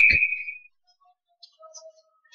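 A man's voice trailing off and fading out in the first half second, then near silence with a few faint, brief tones near the end.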